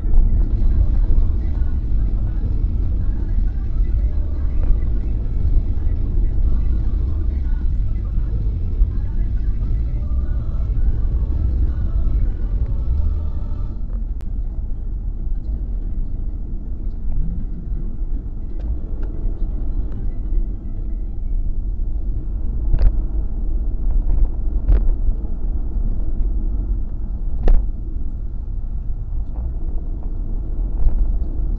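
Steady low road and drivetrain rumble inside the cabin of a Kia Carens driving at speed, with three sharp ticks in the second half.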